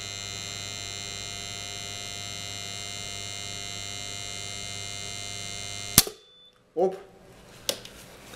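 A current-injection test rig hums steadily while driving 150 A, three times rated current, through one pole of an AP50 circuit breaker. About six seconds in, the breaker's thermal release trips with a sharp click and the hum cuts off at once. The trip comes well short of the 10 to 50 seconds that the breaker's time-current curve calls for at this current, so it fails the test.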